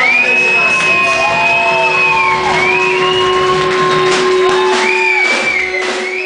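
Punk rock band playing live and loud on electric guitar and drums, with long held high notes over a steady drone. It begins to fade near the end.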